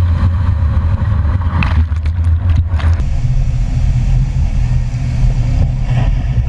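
Loud, deep rumbling surge of seawater flooding into the ferry as it is scuttled, with some crackling in the first half; the sound changes abruptly about halfway through.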